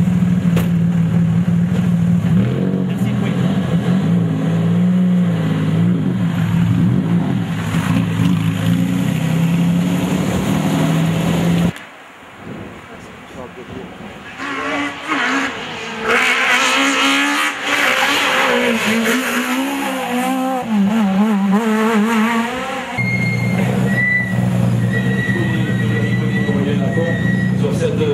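A rally car engine drones steadily for about twelve seconds, cuts off abruptly, then about two seconds later a rally car is driven hard on a tarmac stage, its engine note rising and falling with gear changes for several seconds. A steady engine drone returns near the end.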